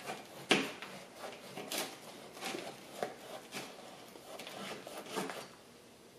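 Grafting knife cutting and scraping down the side of a black plastic tree pot, a string of short scrapes and clicks.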